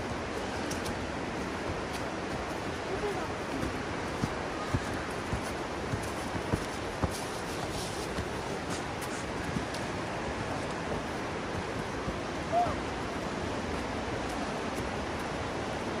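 Footsteps on a dirt trail covered in dead leaves: light, irregular steps over a steady rushing background noise.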